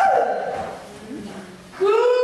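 A person's voice making wordless calls: a short high cry that slides down at the start, then a longer call near the end that rises and holds a steady pitch.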